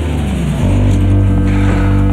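Background music: a tone that slides downward in pitch, then settles into a steady low bass note.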